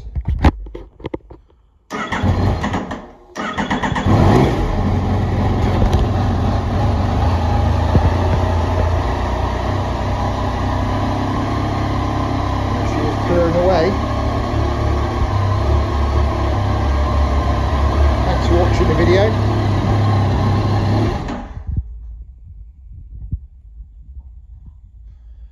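Yamaha MT-09 Tracer's three-cylinder engine being started: a few clicks, about a second of starter cranking, then it fires, revs once briefly and settles into a steady idle. It is switched off near the end.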